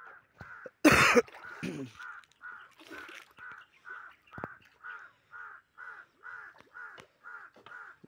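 A bird calling over and over at a steady pitch, about two and a half calls a second. About a second in, a single loud, short burst of noise stands out over it.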